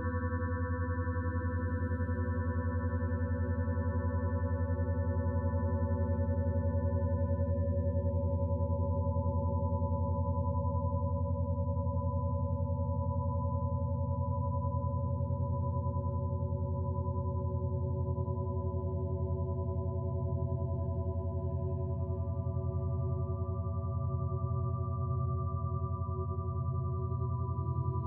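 Meditation drone music: a low tone pulsing rapidly, the quick vibration meant to steer brainwave activity, under long held higher tones. Some of the higher tones fade out in the first half, and new ones come in during the second half.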